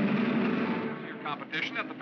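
Film score music fading out during the first second, then a man's voice talking fast, heard through a car radio.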